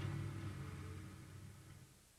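Outdoor background noise with a low engine rumble, fading steadily down to near silence.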